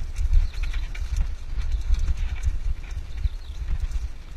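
Mountain bike rolling fast downhill on a dirt trail, with wind buffeting the microphone and the bike rattling and clicking over bumps.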